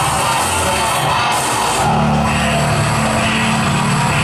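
A live industrial rock band playing loud through the club PA, with a deep sustained bass line coming in about two seconds in.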